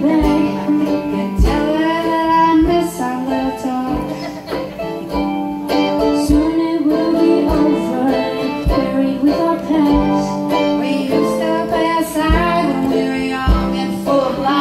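Live acoustic band playing: a mandolin and a small acoustic guitar strummed together, with a harmonica carrying the sustained melody through a microphone.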